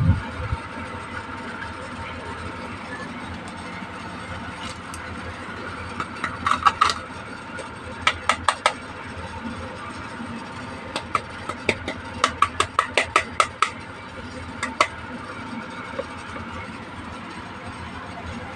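Small hard plastic toy pieces clicking and tapping as they are handled and set down, in short runs of quick clicks with the longest run in the second half. A steady low hum sits underneath.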